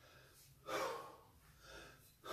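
A man breathing hard during kettlebell snatches: a sharp, forceful breath about 0.7 s in, then a softer breath near the end.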